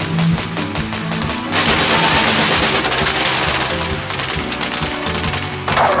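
Action-film soundtrack: music with rapid automatic gunfire, which turns into a louder, denser burst of gunfire noise about a second and a half in. A short cry falls in pitch at the very end.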